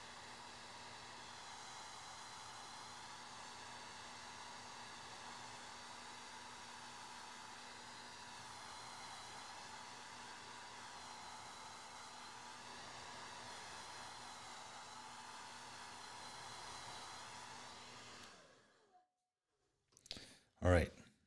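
Hand-held hair dryer blowing steadily over wet ink on watercolour paper to dry it, faint because the microphone volume is turned down. It winds down and stops shortly before the end.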